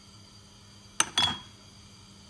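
Glass sauce bottles clinking against each other in a cupboard, two sharp clinks about a second in, the second with a brief ringing tone.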